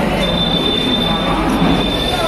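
Train wheels squealing on the rails as a Vande Bharat Express trainset comes into the platform: one steady high-pitched squeal, over station crowd noise.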